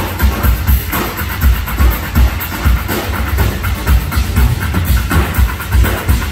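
Live band music for an Irish dance number, played loud with a heavy, fast drum beat and dense percussive clatter on top.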